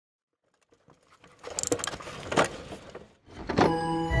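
Intro sound effects for an animated logo: a noisy swishing build-up with two sharp whooshes, about two and a half and three and a half seconds in.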